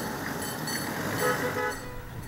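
Street traffic: the steady noise of passing vehicles' engines and tyres, with a few short horn toots in the second half.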